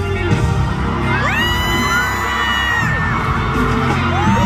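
Live concert music over the venue's loudspeakers with a heavy bass beat, and fans in the crowd screaming: a long high scream rises about a second in, holds for over a second and falls away.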